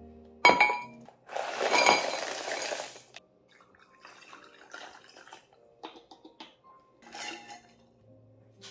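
Kitchen dishes and utensils: a sharp ringing clink about half a second in, then about two seconds of scraping and clattering, then lighter clinks and taps.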